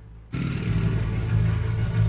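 Street traffic with a vehicle engine running close by, cutting in suddenly about a third of a second in as an outdoor microphone feed opens, then holding steady.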